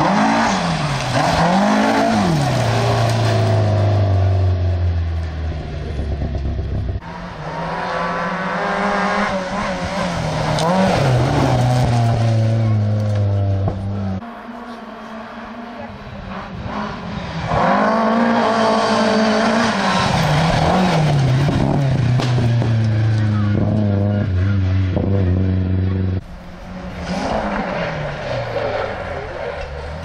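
Rally cars driven hard through a corner one after another, engines revving up and down through gear changes. A Mercedes-Benz 190E goes by first and a Peugeot 306 arrives near the end, with the sound breaking off suddenly between cars.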